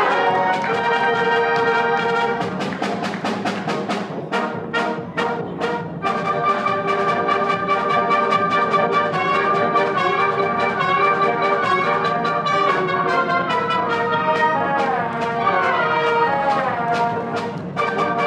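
Concert wind band playing live: clarinets, saxophones and brass holding chords, with a run of short, sharp accented hits from about three to six seconds in and falling runs near the end.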